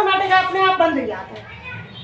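Speech: a woman's voice talking for about the first second, then a quieter stretch.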